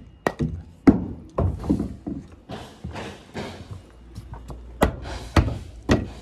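Sharp knocks and thumps on wood framing: two early on and three more near the end, about half a second apart, with shuffling handling noise between.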